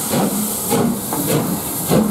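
LMS Black Five two-cylinder 4-6-0 steam locomotive pulling away from a standstill: a loud steady hiss of steam from around the cylinders, with exhaust chuffs about twice a second.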